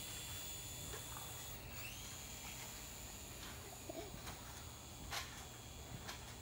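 Toy RC helicopter's small electric motor whining with steady high tones, dipping briefly in pitch about two seconds in, over a low steady rumble.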